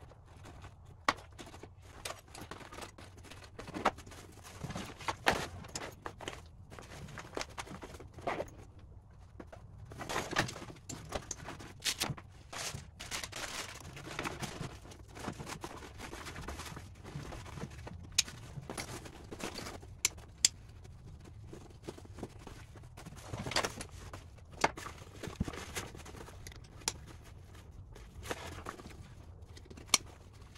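A backpack being packed and strapped up by hand: fabric rustling and shifting, with irregular sharp clicks and knocks from straps, buckles and gear going in.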